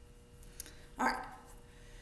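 A dog barks once, a single short bark about halfway through.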